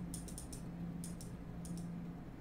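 Faint, irregular clicks and scrapes of a computer mouse being dragged to draw on screen, in small clusters, over a steady low hum.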